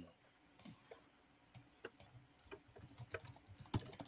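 Faint, irregular computer-keyboard typing and clicks, with a few sharper isolated clicks and a quicker run of small taps near the end.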